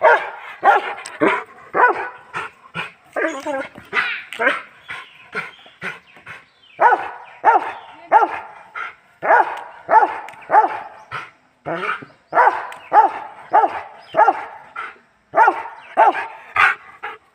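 Dog barking over and over, about two short barks a second with a couple of brief pauses: excited play barking as it jumps for a ball hung overhead.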